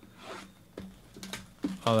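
Packaging of a sealed trading-card box being ripped open by hand: a rasping tear at the start and a couple of short, sharp rips just past a second in.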